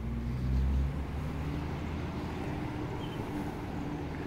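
Low steady rumble of a car engine running at low speed, briefly louder about half a second in.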